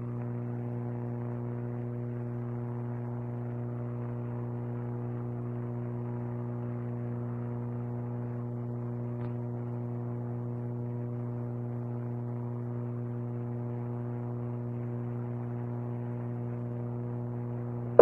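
A steady low electrical hum with several evenly spaced overtones, unchanging in pitch and level, heard through a narrow, radio-like audio channel.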